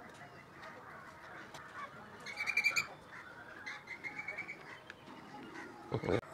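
A bird calling faintly in the background: one short, fluttering call about two and a half seconds in, then a thinner, fainter one about four seconds in, over a few soft ticks and rustles from hands pressing potting mix into a ceramic pot.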